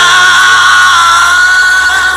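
Rock urbano song recording: one long, slightly wavering high note held over a steady bass.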